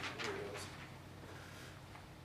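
Quiet room tone with a steady faint hum. A brief low murmur of a voice and a few soft knocks come in the first half second or so.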